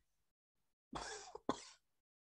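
A person coughing twice in quick succession about a second in, two short, sharp coughs close to the microphone.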